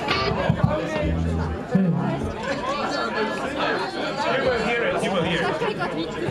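Chatter of many voices talking over one another, with a few low notes plucked on an electric instrument about a second in.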